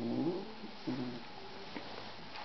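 A domestic cat giving two short, low grumbling calls, one right at the start and a shorter one about a second in. This is a cat excited by catnip, and the owner takes the sound for her usual happy noise rather than anger.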